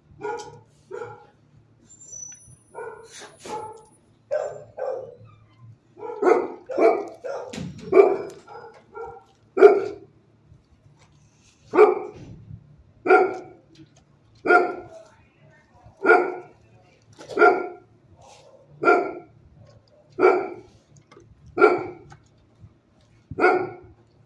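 A dog barking repeatedly: a quick, irregular run of barks through the first ten seconds, then single barks about every second and a half.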